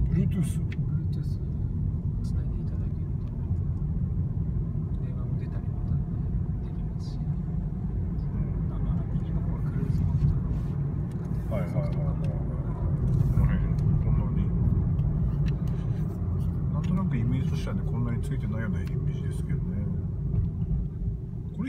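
Steady low rumble of engine and road noise inside the cabin of a Mazda Demio XD, its 1.5-litre four-cylinder turbodiesel pulling the car along at town speed.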